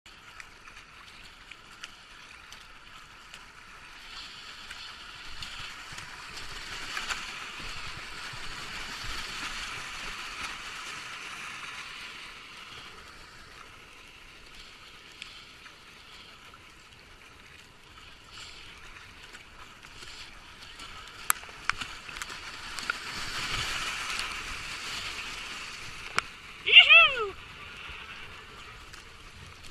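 A kayak going through white-water rapids: paddle strokes splashing and foaming water rushing, louder in two stretches, the second building near the end. Just before the end, a brief, loud cry that falls steeply in pitch is the loudest thing.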